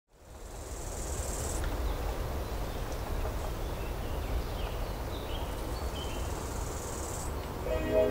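Outdoor nature ambience: a steady low rustling noise with a high, steady insect-like buzz in the first second or two and again near the end, and a few faint short chirps in between. Music with steady pitched notes fades in just before the end.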